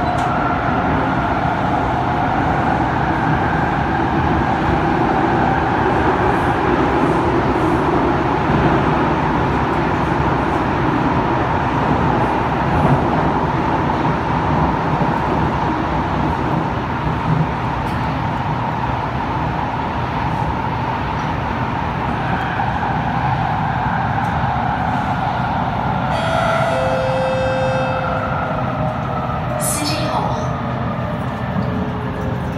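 Kawasaki Heavy Industries C151 metro train heard from inside the car, running through a tunnel: a loud, steady rumble with a whine from the motors over it. A brief high squeal comes near the end.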